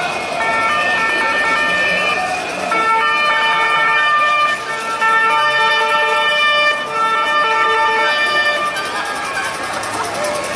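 Loud, steady horn-like tones, each held for a second or two with short breaks and a change of pitch between blasts, sounding over a marching crowd.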